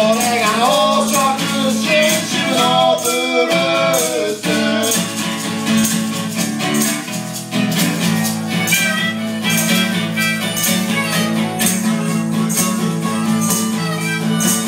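Acoustic guitar strummed live with maracas shaking in a steady rhythm. A man sings over them for the first four or so seconds, after which guitar and maracas carry on without the voice.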